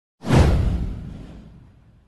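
A whoosh sound effect with a deep rumble beneath its hiss. It swells in sharply just after the start, then fades away over about a second and a half.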